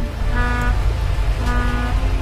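A steady low rumble with two short tones laid over it, each about half a second long and about a second apart.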